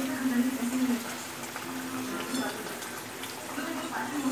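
Thick curry gravy bubbling at a boil in a wok, with pieces of fried fish being slid into it.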